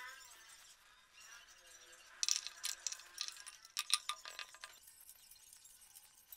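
Small metal bolts and parts clinking together in the hand, a quick run of light clinks in the middle of a fairly quiet stretch.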